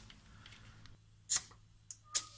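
A single short puff of air hissing at a car tire's valve stem about halfway through, as a pencil pressure gauge is pressed on to check the tire's pressure, with a small click near the end; otherwise faint.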